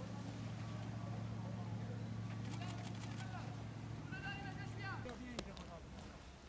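Raised voices of men calling and shouting in the second half, over a steady low hum and noise. The hum stops about five seconds in, and a single sharp click follows.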